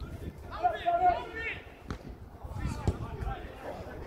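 An indistinct voice calling out, loudest about half a second to a second and a half in, over low outdoor background noise, with a single sharp click near the middle.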